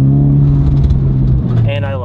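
Honda Civic Type R (FL5) 2.0-litre turbocharged four-cylinder engine pulling under load, heard from inside the cabin, its pitch climbing slowly and then fading in the last half second. The car runs an aftermarket PRL Motorsports intake, with which the driver finds the exhaust tone deeper.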